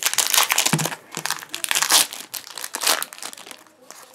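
Foil wrapper of a Pokémon Hidden Fates booster pack crinkling in the hands as the pack is opened, loudest over the first two seconds and again briefly near the three-second mark, thinning out near the end.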